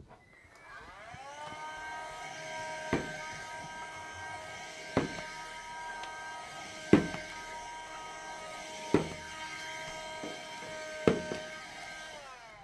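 Steady electric whine made of several tones, sliding down in pitch and settling about a second in, with a sharp click about every two seconds.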